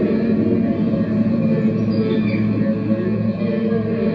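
Electronic ambient drone music: layered sustained low tones, with some pitches sliding slowly up and down, from a synthesizer and effects rig played through an amplifier.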